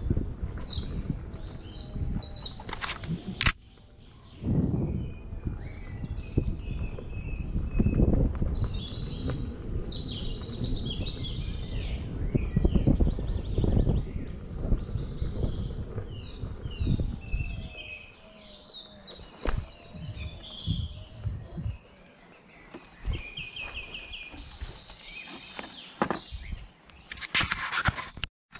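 Woodland birds chirping and singing over the low rumble and wind buffeting of an electric unicycle ride along a bumpy dirt trail. The rumble drops away about two-thirds of the way through as the ride slows almost to a stop, leaving the birdsong clearer.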